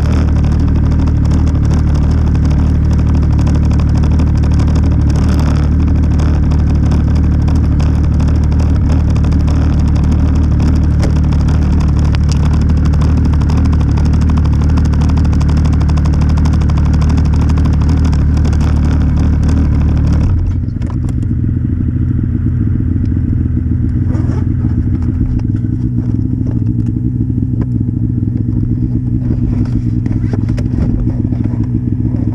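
Snowmobile engine idling steadily while stopped, close to the microphone. About two-thirds of the way through, the sound changes: the hiss falls away and the idle settles lower and rougher.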